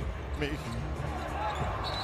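Live basketball play on a hardwood court: ball and sneaker noise over a low steady arena rumble, with a brief high squeak near the end.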